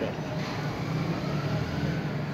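Steady background noise with no distinct events, like distant traffic or machinery hum.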